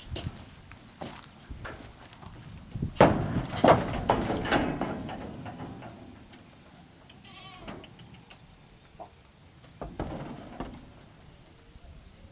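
A horse's hooves clomping on the floor of a stock trailer as it steps in, a loud run of hoofbeats about three to five seconds in, then fainter shuffling and the odd knock.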